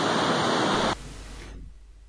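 Steady rushing of a waterfall in full flow, which cuts off suddenly about a second in, leaving faint room tone.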